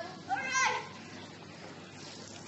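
A child's short, high-pitched yell about half a second in, as during a water fight.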